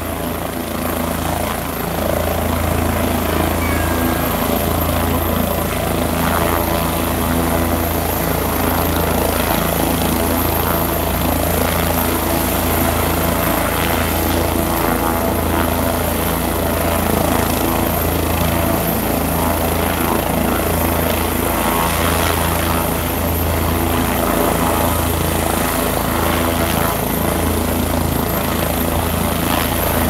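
Helicopter running on the ground with its rotor blades turning, a steady low beat of the blades under a faint high whine, even throughout.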